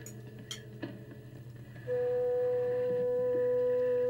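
Vintage film soundtrack: a low steady hum with a few faint clicks, then about halfway through a single long musical note comes in loud and holds steady.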